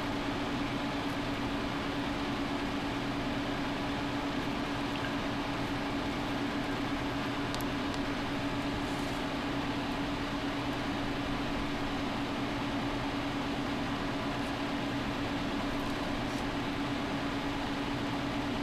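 A steady mechanical hum with one constant low tone over a soft hiss, unchanging throughout.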